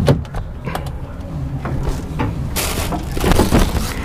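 Knocks and rustling as a person climbs up into a semi-truck cab through the open door: a sharp knock at the start and a longer rustle about two and a half seconds in, over a steady low rumble.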